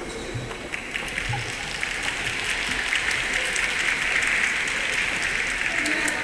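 Audience applauding: the clapping swells over the first second or two, then holds steady.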